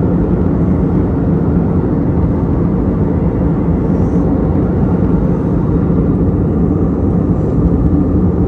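Steady cabin noise of a jet airliner in flight, heard from a window seat over the wing: the low drone of the engines and rushing airflow, with a steady hum underneath.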